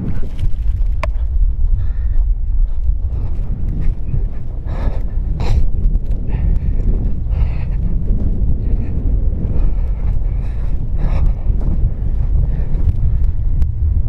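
Wind buffeting the camera microphone outdoors, a loud steady low rumble.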